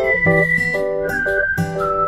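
Background music: a whistled melody holding long notes that step down in pitch, over plucked guitar chords.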